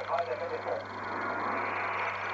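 Amateur radio receiver playing a transmission: a steady rush of hiss with a low hum under it, and muffled, garbled speech in the first second.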